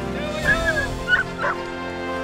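Dogs held at a lure-course start line yelping and barking in excitement: an arching, whining yelp about half a second in, then two sharp barks. Background music plays underneath.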